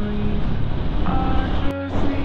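Honda Winner X single-cylinder motorcycle riding in traffic: a steady engine and road rumble with wind rushing over the helmet-camera microphone, broken by a brief dropout near the end.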